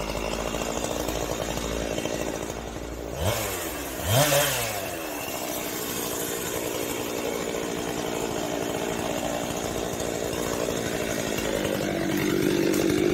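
Two-stroke chainsaw idling, revved up twice in quick succession about three to four seconds in, the second rev the louder, then settling back to a steady idle.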